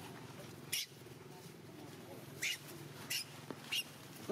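Baby monkey whimpering faintly, with four short hissy bursts: one just under a second in and three in the second half.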